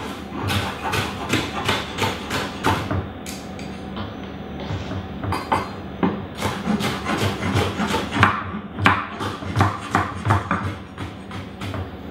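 Chef's knife dicing red bell pepper on a wooden cutting board: quick, even knocks of the blade on the board, about three to four a second, with a lull in the middle.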